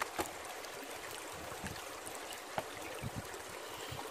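Shallow river water running steadily and washing around a black plastic gold pan as it is worked in the current, with a few light clicks and splashes.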